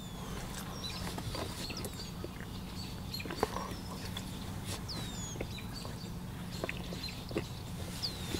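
Birds chirping outside, short falling calls every second or so, over a steady low hum, with faint clicks of chewing now and then.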